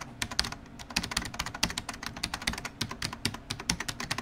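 Rapid computer-keyboard typing, about a dozen keystrokes a second. It is a typing sound effect that goes with text being typed out on screen.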